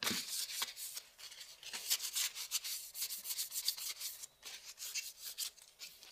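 Gloved hands rubbing and scraping at a metal nail-file board, a quick irregular run of dry, scratchy strokes with a brief pause about four seconds in, as the board is readied for a new adhesive abrasive strip.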